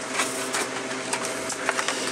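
A steady background hum with several light clicks and rustles from carded Hot Wheels blister packs being handled.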